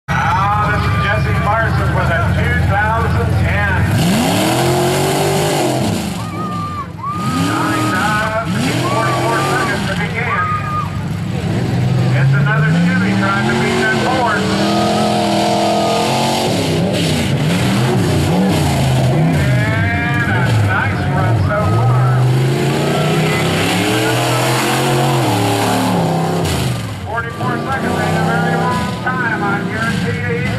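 Modified pickup truck's engine revving hard on a dirt competition course, its pitch sweeping up and down over and over as the throttle is worked. The revs drop back briefly about six seconds in and again near the end.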